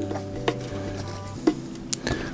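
Soft background music with steady held notes, over a few light clicks and taps as a hand presses sphagnum moss into a glass terrarium and knocks against the glass.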